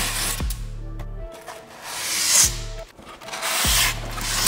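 Styrofoam packing panel rubbing and scraping against the inside walls of a cardboard box as it is pulled out, in three long scratchy swells, over background music.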